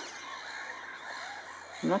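Faint outdoor background with distant bird calls; a woman's voice starts near the end.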